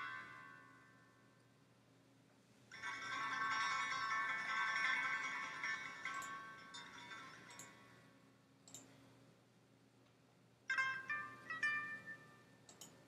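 Instrumental background music of bell-like chiming notes. A ringing swell starts about three seconds in and slowly fades, and a quick run of struck chime notes comes near the end.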